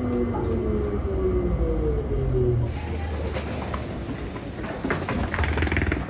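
Electric automated people-mover train slowing down, its motor whine falling steadily in pitch over a low running rumble. About three seconds in this gives way to footsteps and wheeled suitcases on a stone floor in an echoing hall.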